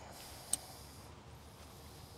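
Faint outdoor background with one short, sharp click about half a second in.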